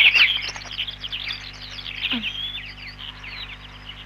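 Many small birds chirping and twittering together, a dense run of quick chirps that thins out after the first couple of seconds.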